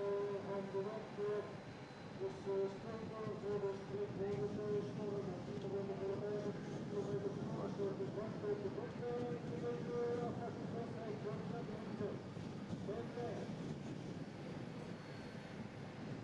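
Camera motorcycle's engine running steadily behind the cyclists, a droning hum whose pitch steps up about nine seconds in, over road and wind noise.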